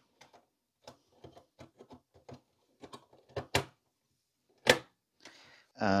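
Dell's steel drive bracket being turned over and seated back into the small-form-factor PC's sheet-metal chassis: a run of light clicks and metal taps, then two sharper metallic clunks about three and a half and four and a half seconds in.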